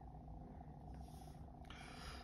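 Near silence: faint, steady low room hum.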